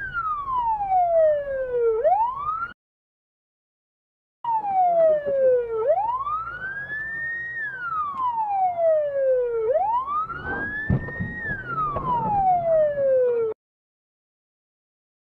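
Police siren wailing, its pitch sweeping slowly down and back up, about two seconds each way. It cuts off abruptly twice: once for nearly two seconds early on, and again just before the end. A few low thuds sound under it near the end.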